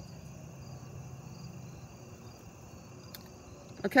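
Quiet outdoor ambience: crickets chirping steadily at a high pitch over a low, even rumble that fades out past the middle.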